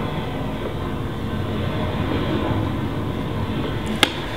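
Steady low rumble of a train carriage in motion, played as a train-ride ambience, with a sharp click right at the end.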